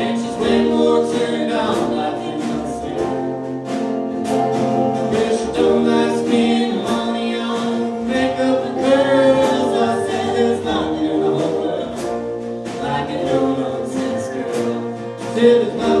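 Live band playing a song with acoustic guitar, upright bass and drums, with a man and a woman singing together over a steady beat.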